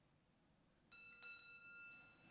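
A small bell struck twice in quick succession about a second in, its clear high tones ringing on and slowly fading, faint against a quiet church.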